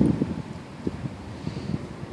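Wind buffeting the microphone: an uneven low rumble with irregular gusty bumps, strongest at the very start.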